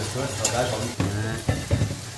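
Vegetables sizzling as they stir-fry in a frying pan while a spatula stirs them, with a few sharp clicks of the utensil against the pan in the second half.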